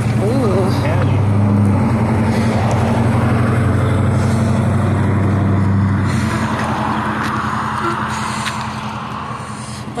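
A limousine's engine humming steadily close by for several seconds, then fading away as it moves off over the last few seconds.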